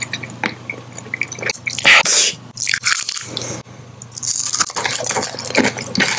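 Close-miked wet mouth sounds: lip smacking and chewing, with many quick wet clicks and a louder rush of noise about two seconds in.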